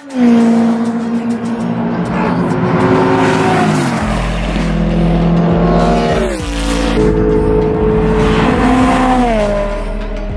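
Race cars passing on a track straight under power, loud throughout. Each engine note holds its pitch and then drops as the car goes by, about three times.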